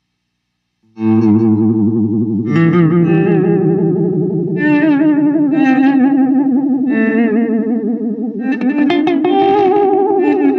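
Paul Reed Smith CE 24 electric guitar played through a Hologram Electronics Infinite Jets Resynthesizer pedal. After about a second of silence it is struck about five times, every two seconds or so. Each strike is held as a resynthesized sustained tone whose pitch wobbles steadily.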